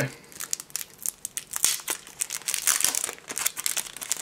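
Pokémon card-pack packaging being opened by hand: the paper mystery-pack envelope and the booster pack inside it crinkling and crackling in a quick, irregular run of sharp rustles.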